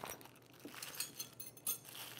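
Faint metallic clinking of small tools being handled out of an e-bike's toolkit pouch, a few light clicks and clinks.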